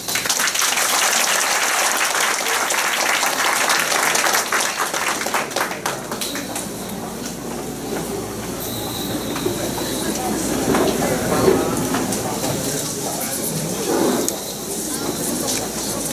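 Audience applauding after the song: dense clapping for the first several seconds, which then gives way to a hubbub of many voices talking at once.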